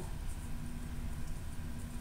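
Steady low room rumble with a faint constant hum underneath: background noise of a classroom, with no distinct event.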